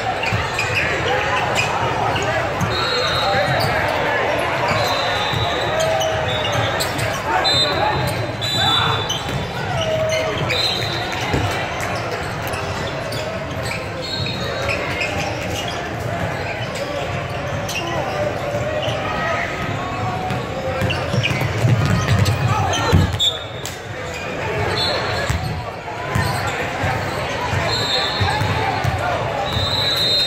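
A basketball bouncing on a hardwood court amid the echoing chatter of players and spectators in a large gym, with short high-pitched squeaks now and then.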